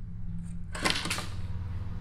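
Steady low electrical hum of the recording's room tone, with one short soft rustle or breath-like noise about a second in.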